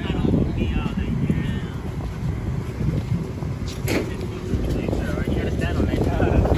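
Voices of people talking in the background over a steady rumble of wind on the microphone, with a single sharp click or knock about four seconds in.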